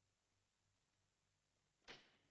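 Near silence on a film soundtrack, broken just before the end by a single sudden sharp sound that fades quickly.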